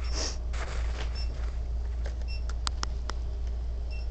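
Store background noise: a steady low hum with faint short beeps now and then, a couple of soft rustles early on, and a quick run of light clicks about two and a half seconds in.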